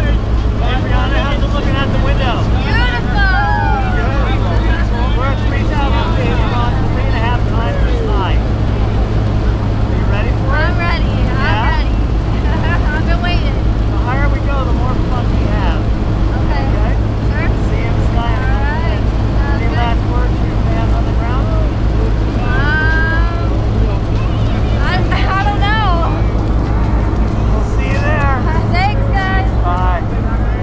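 Steady drone of a jump plane's engine and propeller heard from inside the cabin, with voices talking over it.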